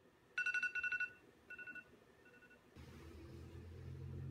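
An electronic alarm beeping: a quick run of rapid high beeps for under a second, then a shorter, fainter burst and a last very faint one. A low steady hum comes in after the beeping stops.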